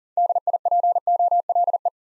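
Morse code sent as an on-off tone at a single steady pitch, spelling the word DIPOLE at 40 words per minute in quick dits and dahs.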